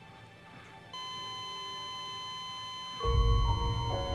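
A patient heart monitor sounding its continuous flatline tone: one steady high beep begins about a second in and holds, signalling that no heartbeat is detected. About three seconds in, music with deep low notes swells in beneath it.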